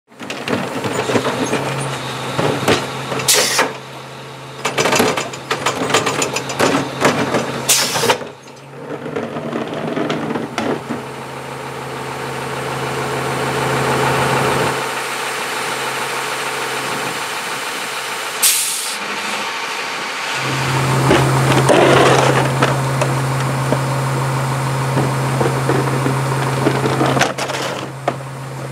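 CCC integrated rear loader garbage truck running, with a steady low engine hum. Sharp metal clanks and bangs fill the first eight seconds or so, and a short burst of noise comes about eighteen seconds in.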